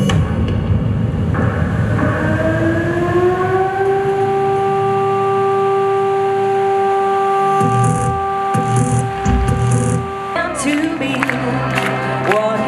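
Live stage music: after a low rumble, one long note is held steady for about nine seconds, gliding up a little at its start, with low thumps under its final seconds; wavering singing comes in near the end.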